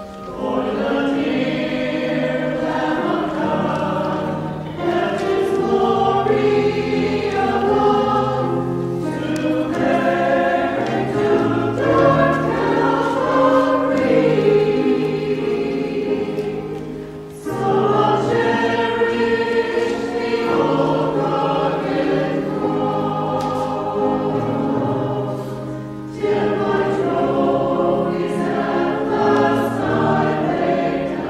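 A mixed church choir of men's and women's voices singing together in sustained phrases, with brief breaks between phrases about 5, 17 and 26 seconds in.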